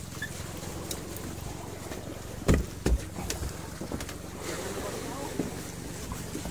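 A boat engine running steadily with a low hum. Two heavy thumps come a little less than half a second apart, about halfway through.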